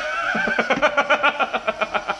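A high, rapidly pulsing, whinny-like cackle lasting about a second and a half.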